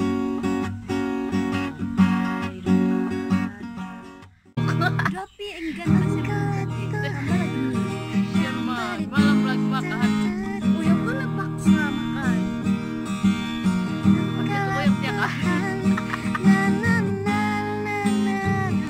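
Acoustic guitar strummed in chords. It breaks off about four seconds in, and after a brief gap the strumming resumes with a person's voice over it.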